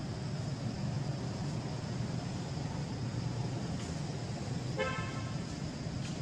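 A steady low rumble, like a running motor, with one short horn-like toot about five seconds in.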